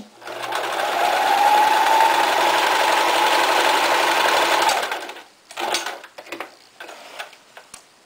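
Electric domestic sewing machine stitching a zigzag stitch. The motor speeds up over the first second or so, runs steadily for about four seconds, then stops. A few brief short sounds follow.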